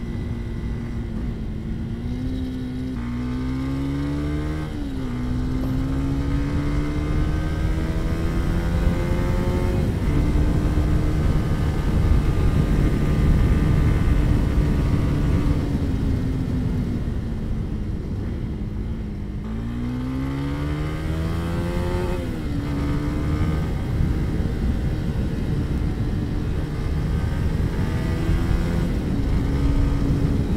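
Sport motorcycle engine accelerating toward 100 km/h. Its note climbs and drops back sharply at the gear changes, falls away in the middle as the bike eases off, then builds again. The wind rush of a lavalier microphone mounted in a helmet runs under it.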